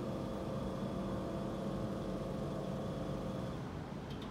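A steady mechanical hum with a low rumble and a few faint constant tones, unchanging throughout.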